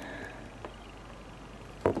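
Quiet room background with a faint click about two-thirds of the way through and a sharper click near the end.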